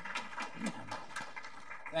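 Footsteps on a hard floor, a man walking: a series of irregular knocks, several a second, with faint voices beneath.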